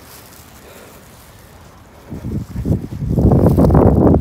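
Wind buffeting the phone's microphone: a low, gusty rumble that starts about two seconds in and quickly grows loud, over a quieter steady background before it.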